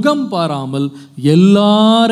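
Only speech: a man preaching in a sing-song, chant-like cadence, holding one long drawn-out note from just past halfway.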